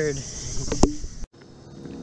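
Insects chirping steadily, with a sharp click a little under a second in; the sound cuts off abruptly just past the middle, leaving only a faint hum.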